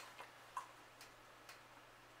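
Near silence: room tone with a steady low hum and a few faint, short clicks about half a second apart.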